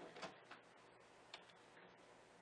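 Near silence: faint room tone with a few weak clicks.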